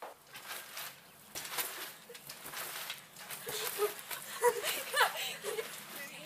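Two people bouncing on a trampoline: a run of irregular thumps and rattles from the mat and springs. From about halfway, short high cries that fall in pitch join in and get louder.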